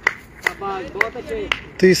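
Sharp taps about two a second, with faint voices of players between them; a man's voice speaks loudly near the end.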